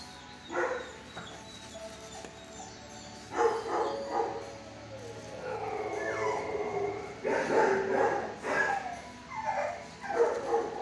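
Dogs in shelter kennels barking and yelping in repeated short bursts, with a drawn-out whining call around the middle and a busy run of barks near the end.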